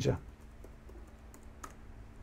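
Typing on a computer keyboard: a few scattered, faint keystrokes.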